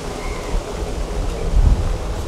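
Low rumbling wind noise buffeting a clip-on microphone, swelling about one and a half seconds in.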